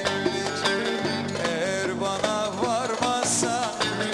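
Turkish folk dance tune in the Ankara oyun havası style, played instrumentally: a bağlama (long-necked Turkish lute) carries an ornamented melody over accompaniment, with no singing.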